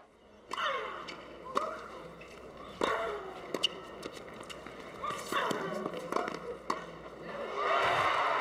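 Tennis rally: rackets strike the ball in several sharp pops about a second apart, over a low murmur of spectators. The crowd noise swells near the end as the point is won.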